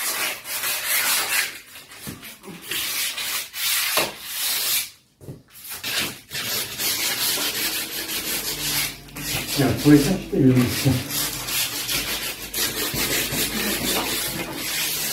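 Wooden door and door frame being sanded by hand, in irregular scratchy back-and-forth strokes with a short pause about five seconds in.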